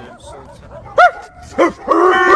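A dog barking behind a chain-link gate: a few loud, sharp barks, starting about a second in.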